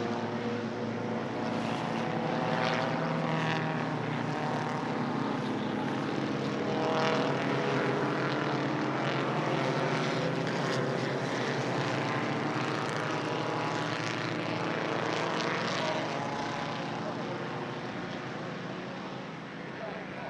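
Engines of several pre-war racing sports cars running hard, the cars passing one after another, each engine note rising and falling as it goes by. The engine sound eases off over the last few seconds.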